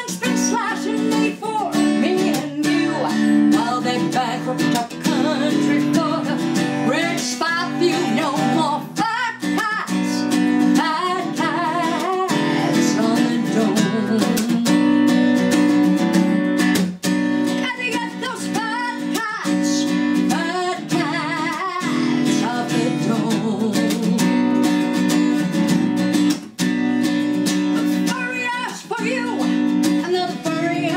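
Acoustic guitar strummed steadily, with a woman singing over it at intervals.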